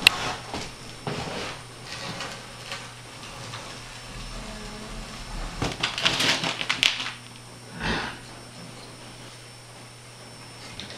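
A tote of fodder mats being lowered on a rope and pulley: scattered rustles and knocks, a burst of clatter about six seconds in and a dull thump near eight seconds, over a steady low hum.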